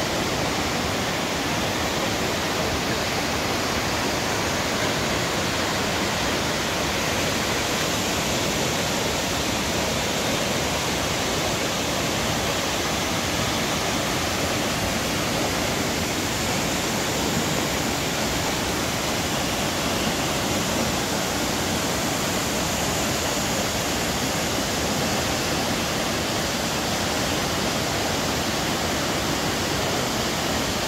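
A waterfall's steady rushing, even and unbroken, with falling water spread over the whole range from deep to hiss.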